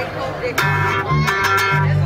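Live band starting to play through a PA about half a second in: steady bass notes under strummed guitar chords with sharp strokes, after a moment of voices.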